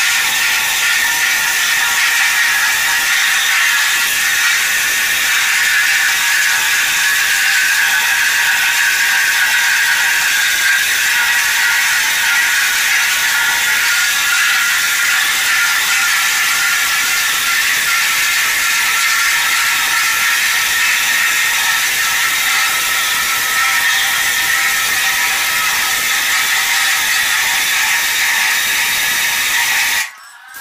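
Marble floor grinding machine running steadily, its stones grinding a wet marble floor. The noise is continuous and even, with bright grinding tones and little low rumble.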